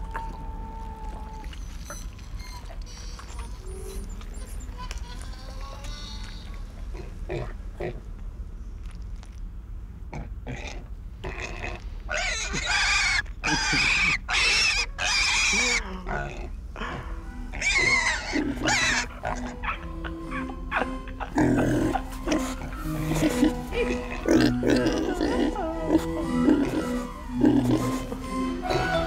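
Pig squeals in a run of loud, short bursts about halfway through, followed by music that comes in for the last few seconds.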